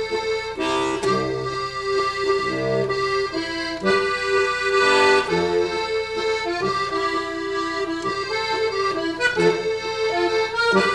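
Diatonic button accordion playing a simple Cajun waltz: held right-hand chords over an elongated bass pattern.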